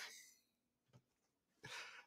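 Near silence in a pause between spoken phrases: the last word trails off at the start, and a faint short sound comes just before speech resumes.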